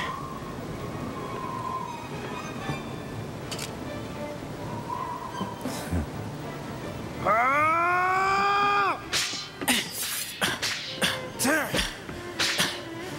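Anime sword-fight sound effects over background music: a long, loud battle cry rising in pitch about seven seconds in, then a rapid run of sword swishes and strikes mixed with short grunts.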